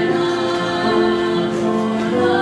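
Mixed student choir singing together in harmony, holding notes that move from chord to chord.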